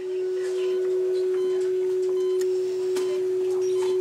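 A single steady electronic tone held throughout, with faint short higher-pitched beeps and a few clicks over it.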